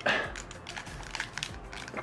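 Double-ratcheted knee joint of a sixth-scale Iron Man Mark L action figure clicking faintly, a few clicks, as the knee is bent.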